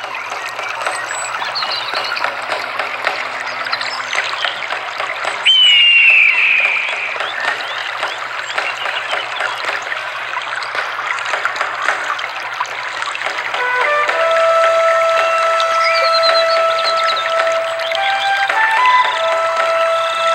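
Rushing, splashing water noise, with a sudden high falling sweep about five and a half seconds in. From about fourteen seconds in, music with long held notes enters over the water.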